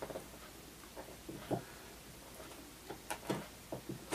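Hobby knife cutting into a thin plastic soda bottle: faint, scattered clicks and crackles of the plastic, with a few sharper ticks about a second and a half in and again after three seconds.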